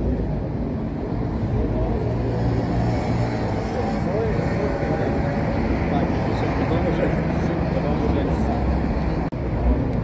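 City street traffic noise, a steady rumble, with people's voices talking around, briefly cut off about a second before the end.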